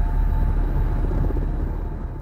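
Intro sting sound effect for an animated logo: a deep rumble with a noisy rush over it, fading out toward the end.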